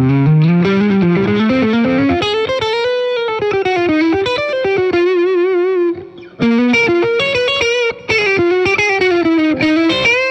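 Caldwell Custom Closet Classic S-style electric guitar, overdriven, with the neck and bridge single-coil pickups together, playing a single-note lead line with string bends and a held, wavering vibrato note in the middle. The line breaks off briefly about six seconds in and again near eight seconds.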